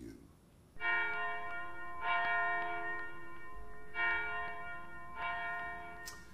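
A single bell struck four times in two pairs, each stroke ringing on and slowly fading.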